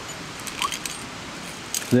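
Via ferrata gear clinking: metal carabiners and lanyard clips tapping on the steel rungs and safety cable, a few light clinks about half a second in and again near the end, over a steady outdoor hiss.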